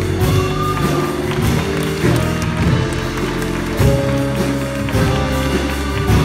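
A big jazz band playing an ensemble passage: saxophones, trombones and trumpets together over low bass notes.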